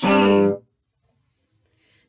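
Cello's open G string bowed for one short, steady note that stops about half a second in.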